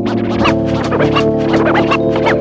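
Vinyl record scratched by hand on a turntable, a quick run of short rising and falling scratch strokes chopped by the mixer's fader, over a lo-fi hip-hop beat.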